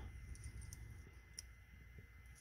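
A few faint clicks from a plastic automotive wiring connector being handled, its release tab being pressed, with one clearer click about two-thirds of the way through.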